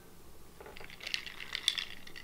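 Ice cubes clinking against the glass of a mason jar as the jar is moved: a quick, uneven run of light clicks that starts about half a second in.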